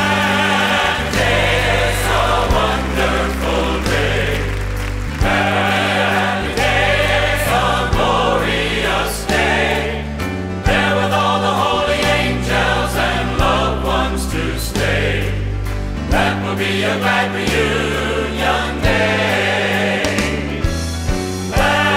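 Live gospel music: a large group of voices singing together in chorus over piano and band accompaniment with a steady bass line.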